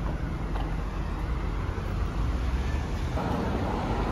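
Road traffic noise beside a busy road: a steady rumble of passing vehicles, with a low engine hum that fades out about a second in.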